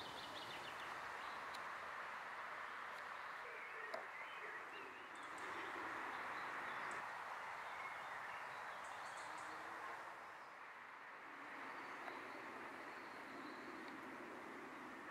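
Steady outdoor background noise with a few faint, high bird chirps near the start and again in the middle, and a single sharp click about four seconds in.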